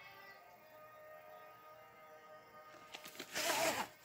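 Faint background music, then near the end a short scraping rustle as a VHS cassette slides against its cardboard sleeve.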